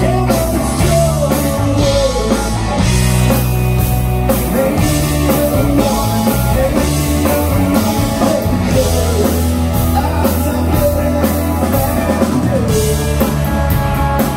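Live rock band playing a song: electric guitars, electric bass and a drum kit, with a male lead vocal over them.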